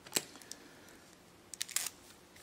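Card rocket tube being handled and its sellotaped seam pressed down by hand: a sharp click about a fifth of a second in, then a short run of crackly clicks near the end.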